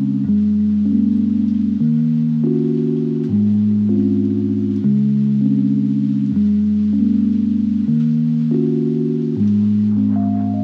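Background music: slow, sustained synth-like chords over a bass line, the chord changing about every second and a half.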